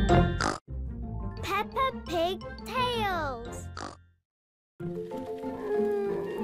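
Children's cartoon music ending with characters' voices making gliding, pig-like oinking calls. About half a second of silence follows a little past the middle, then the next episode's music starts.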